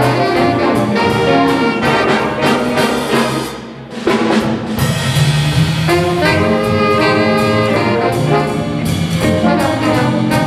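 A school big-band jazz ensemble playing live: saxophones and brass over upright bass and drums. The band thins out briefly just before four seconds in, then comes back in together at full volume.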